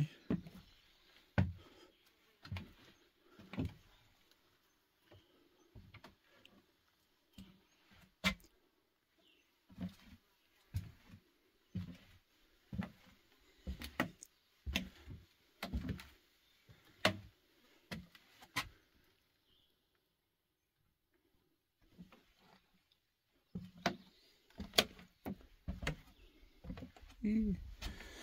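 Slow footsteps on wooden porch deck boards, about one step a second, each a dull knock on the planks. They stop for a few seconds past the middle, then start again.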